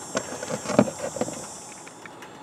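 A few light knocks and clatters from handling the rock and camera, the loudest a little before the middle. A steady, faint high-pitched insect chirring runs behind them and fades out near the end.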